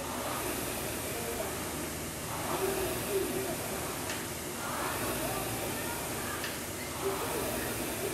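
Air rowing machine being rowed hard: the fan flywheel's whoosh swells with each drive, about every two seconds, over a steady hiss.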